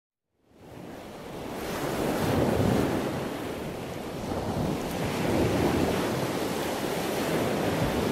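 Sea surf washing on a beach, with wind. It fades in over the first couple of seconds, then swells and ebbs twice.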